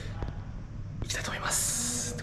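A man speaking quietly and breathily, close to the microphone, starting about a second in, over a steady low hum.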